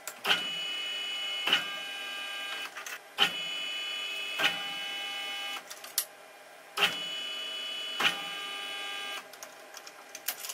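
Manual roller tube bender forming a steel tube. There are repeated sharp clicks, and steady whining stretches of two or three seconds, several of them starting at a click, with short breaks between.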